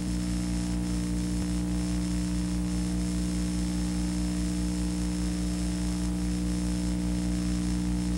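Steady electrical mains hum with hiss on the audio track of an old reel-to-reel black-and-white video recording, with a faint high whine above it. The audio is badly degraded.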